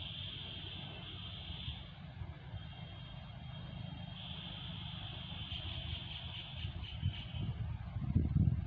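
Wind buffeting the microphone in a low rumble that grows gustier near the end, with a steady high-pitched drone above it that flickers in the second half.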